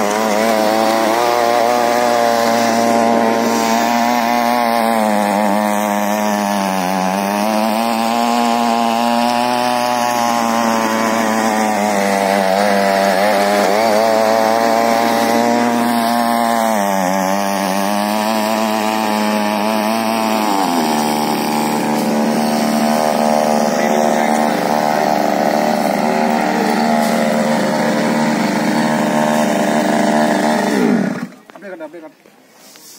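Small petrol engine of a mini weeder running at high speed while its tines till soil. The note sags and recovers twice as the tines bite in, then changes about two-thirds of the way through and runs steadier to the end.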